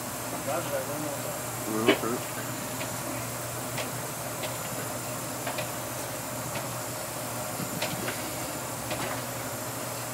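Steady running noise of a pilot boat's engines heard inside the wheelhouse: an even low hum under a haze of noise, with faint clicks roughly once a second.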